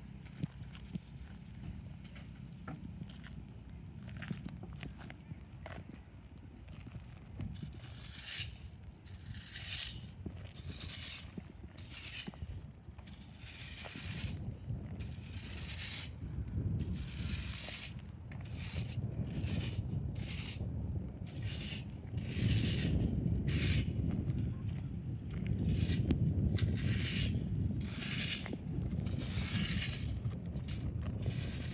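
Metal fan rake scraping over a gravel path, dragging loose stones and debris in repeated strokes, about one a second from several seconds in. A low rumble builds underneath in the second half.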